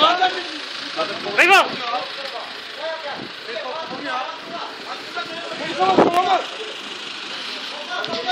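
A motor vehicle's engine running steadily under men's voices, with louder calls about one and a half seconds in and again about six seconds in.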